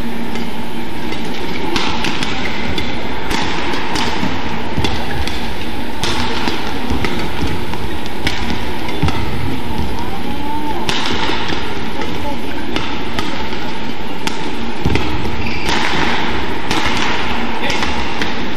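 Indoor badminton arena sound: a steady din of spectators' voices with irregular sharp knocks of racket-on-shuttlecock strikes and players' footwork.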